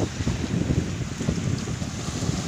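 Wind buffeting the microphone in an uneven low rumble, over small waves washing onto a sandy shore.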